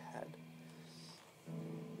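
Ibanez Gio electric guitar: a held note rings on and dies away just over a second in, then a new note is picked about one and a half seconds in.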